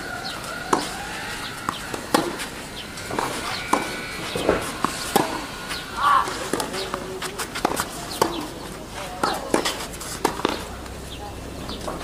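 Tennis rally on a clay court: repeated sharp pops of the ball struck by rackets, with ball bounces and footsteps on the clay between hits.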